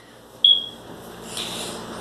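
A single short, high-pitched electronic beep about half a second in, followed by a soft rustling hiss.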